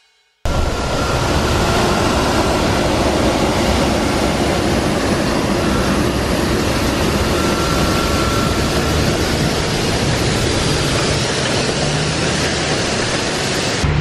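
NECO mixed-flow grain dryer running: a loud, steady rush of air from its fans, with a faint thin whine now and then. It cuts in abruptly about half a second in.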